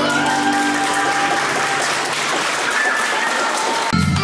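Audience clapping, a dense and steady applause, with the last held notes of the backing music still faintly heard under it in the first part.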